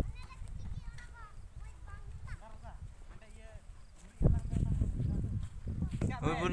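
Faint distant voices over a low rumble on the microphone. The rumble turns much louder about four seconds in.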